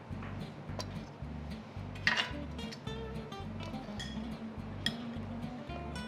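Background music with a steady bass beat, with a few short clinks of kitchen utensils against dishes.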